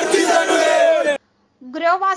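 A crowd of men shouting slogans in unison, loud, with long held shouted notes. It cuts off abruptly just over a second in, and after a short silence a man's voice starts near the end.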